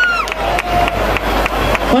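A concert crowd cheers and claps as a song ends. A long held note cuts off about a quarter second in.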